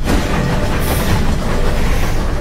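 A train running past, a loud steady rushing rumble, in a cartoon soundtrack with music faintly under it.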